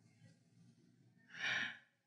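Near silence, then one short, soft breath from a man about a second and a half in.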